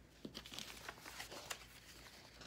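Faint rustling of construction-paper sheets being handled and lifted, with a few light ticks.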